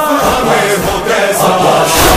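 A group of voices chanting the refrain of an Arabic nauha, a Shia lament, together in a dense, full-voiced chorus.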